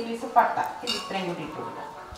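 Kitchenware clinking: a sharp knock and, about half a second later, a ringing clink, as a ceramic plate meets the metal cooking pot while whole spices are tipped into boiling water.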